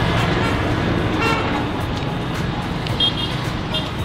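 Steady rumble of road traffic passing, with two short high toots about three seconds in.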